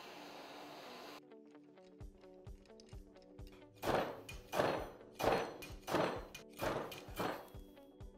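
A torch hisses steadily for about a second as it heats the shock link around a bearing. Then a slide hammer on a blind-side bearing puller knocks again and again, striking harder from about halfway, roughly every two-thirds of a second, to draw out a needle bearing that is rusted in place. Background music plays throughout.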